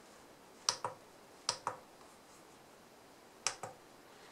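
Keypad buttons of a handheld digital oscilloscope being pressed three times, each press a quick pair of sharp clicks: about a second in, halfway through, and near the end.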